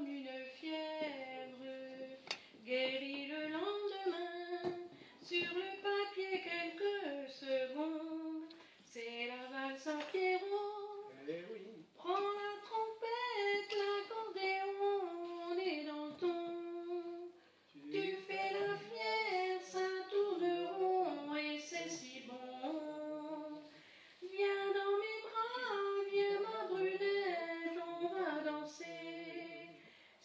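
A woman singing a French song unaccompanied, holding long notes between short breaths.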